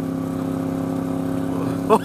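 Honda Gold Wing's flat-six engine running evenly at a steady cruising speed, a constant low drone with wind and road noise.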